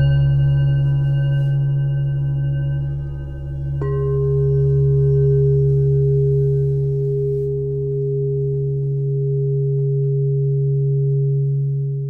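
Meditation music of ringing singing-bowl tones over a steady low drone. About four seconds in a new bowl is struck, and its fresh tone holds and slowly fades with the others.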